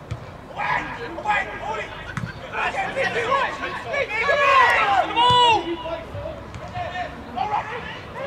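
Footballers shouting to one another during play, several short overlapping calls that are loudest and busiest from about four to five and a half seconds in.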